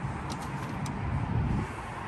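Steady rumble of road traffic and vehicles, with a few faint light clicks in the first second.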